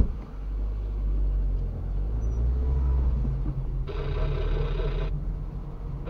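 Low, steady rumble of a car's engine and running gear heard from inside the cabin as the car moves off slowly. About four seconds in, a brighter sound with a wavering pitch cuts in for about a second.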